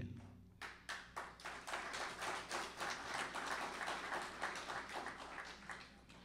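An audience applauding, a dense patter of many hands clapping that starts about half a second in, swells, then dies away before the end, quieter than the speech around it.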